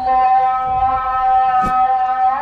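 A chanting voice holding one long, steady note of an Islamic melismatic chant, with a short click a little over halfway through.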